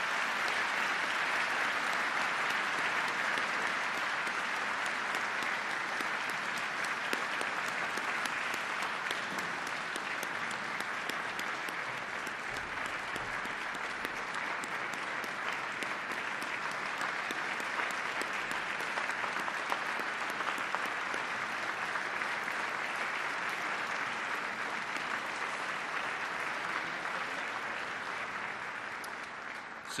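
A large audience applauding steadily for about half a minute, starting suddenly and easing off slightly toward the end.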